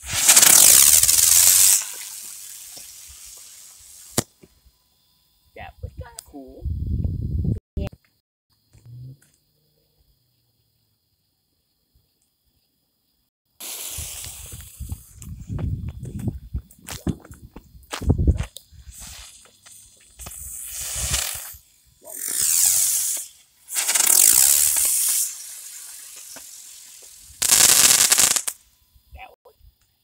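Consumer fireworks going off: a loud bang right at the start that trails off over a couple of seconds. After a few seconds of silence comes a run of bangs and hissing bursts through the second half.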